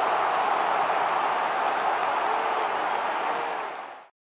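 Live audience applauding, a steady dense clatter of many hands that fades out at the end.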